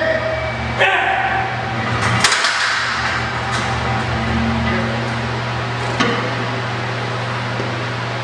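Metal clanks from the plates and a loaded cambered squat bar during a squat rep and racking: three sharp clanks, about a second in, just after two seconds and about six seconds in, over a steady low hum.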